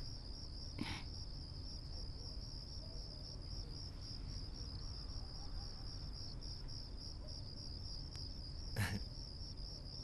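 Crickets chirping in a steady high-pitched trill. Two brief faint sounds come through, about a second in and near the end.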